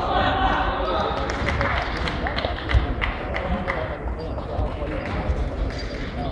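Echoing sports-hall ambience: a murmur of voices with scattered sharp knocks and thumps, the loudest nearly three seconds in.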